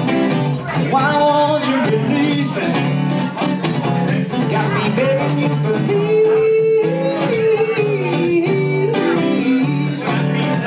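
Steel-string Blueridge dreadnought acoustic guitar strummed in a funk-soul rhythm, with a man's wordless vocal line over it that holds one long note about halfway through.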